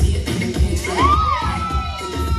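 Group of people cheering and shouting over a dance track with a steady thumping bass beat; about a second in, one long high-pitched shout rises and holds.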